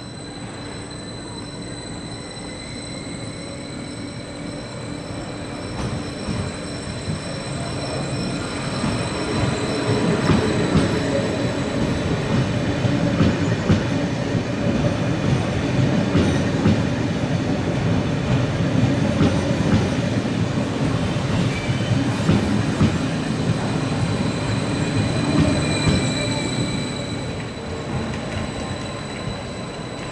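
Stadler Flirt 3 electric multiple unit running into the platform: the rumble of its wheels and running gear grows from about six seconds in and is loudest as it passes close. A faint high whine sits over the rumble, and the sound eases off near the end as the train slows.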